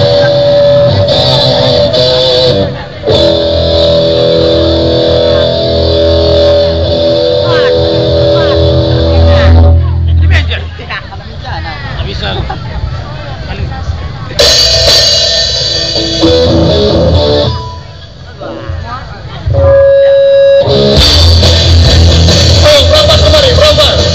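Live rock band playing loud, with electric guitars and drums, heard through a phone's microphone close to full scale. Sustained guitar chords ring for the first ten seconds. The playing drops back for a few seconds and then crashes in loud again, briefly falls away once more, and comes back full near the end.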